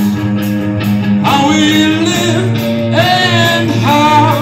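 A stoner rock band playing live and loud: electric guitars, bass and drums, with a singer's voice coming in about a second in and again near the end.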